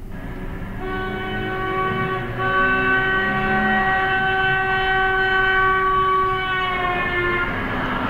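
A car horn held down as the car drives past a stationary listener on the sidewalk: a steady chord of tones that drops in pitch near the end as the car goes by, the Doppler effect.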